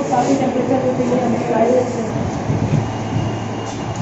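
Indistinct voices in a room, clearest in the first couple of seconds, over a steady rushing background noise.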